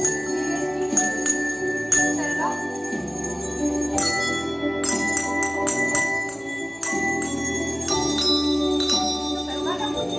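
Coloured press-top desk bells (push-button handbells) rung by children, giving scattered single notes and quick runs of bright ringing strikes, over a slow recorded music backing track.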